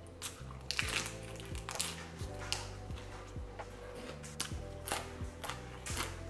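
Crunching and chewing of raw leafy greens, water spinach and romaine lettuce, in several irregular short bites over quiet background music with a steady bass line.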